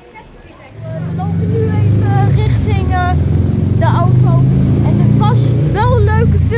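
A vehicle engine running close by, a steady low hum that starts about a second in and stays loud, with voices over it.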